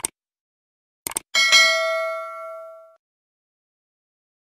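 Subscribe-button sound effect: a short click, then a quick double click about a second in, followed by a notification-bell ding that rings out and fades over about a second and a half.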